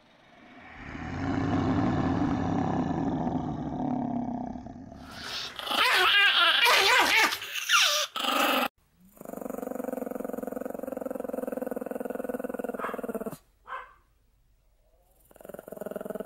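Pomeranian growling and snarling: a loud rough snarl in the middle, then a long, steady growl that cuts off suddenly.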